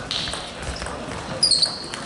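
Table tennis rally: a celluloid-type ball clicking off bats and table, with a brief shoe squeak on the hall floor about one and a half seconds in.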